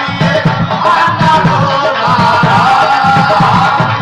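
Live devotional bhajan music: sustained harmonium tones over a steady hand-drum beat of about three to four strokes a second.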